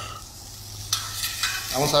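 Whole fish sizzling on a charcoal grill, a steady hiss, with a few light clicks about a second in.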